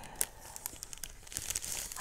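Clear cellophane bag crinkling as it is handled, a run of small irregular crackles.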